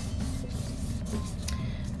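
Fingertips rubbing over dried Elmer's glue on watercolor paper to lift it off, a faint scratchy rubbing over a steady low hum.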